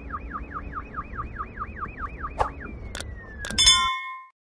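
Sound effects of a subscribe-button animation: a rapid electronic alarm-like tone falling over and over, about five times a second, then a few sharp clicks and a bell-like chime near the end.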